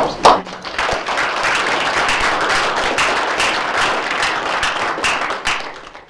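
Audience applauding: steady clapping that dies away near the end.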